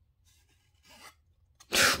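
Faint crinkling of a foil trading-card booster-pack wrapper being peeled open by hand, followed by a short, louder rush of noise just before the end.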